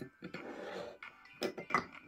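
A glass wine aerator being handled and seated in its decanter stand: a short scrape, then light clicks of glass and plastic parts meeting.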